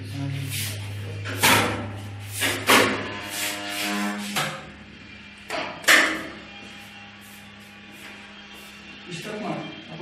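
A few sharp knocks and clatter from an X-ray film cassette and X-ray unit being handled, over a steady low hum.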